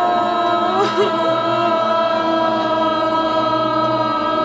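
A group of students chanting together in unison, holding one long, steady note after a deep breath in, with a brief wavering of pitch about a second in.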